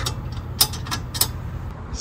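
Two light metallic clicks about half a second apart, over a low steady hum, as loose bolts and fittings at a turbo's exhaust-manifold flange are handled by hand.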